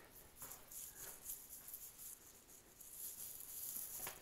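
Faint rustling and a few light taps from someone walking while holding the camera, with the rustle growing a little near the end.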